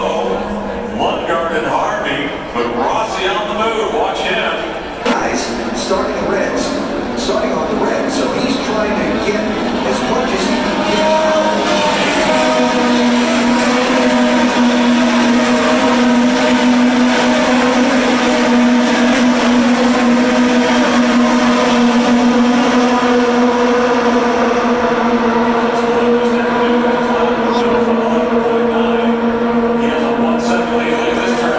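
Race-track grandstand sound: IndyCar engines on the circuit mixed with spectator chatter. About halfway through, a steady droning tone sets in and holds without change.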